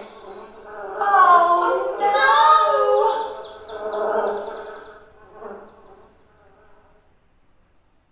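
A high voice gliding up and down in pitch from recorded lesson audio played through loudspeakers. It is loudest from about one to three seconds in and fades away by about six seconds.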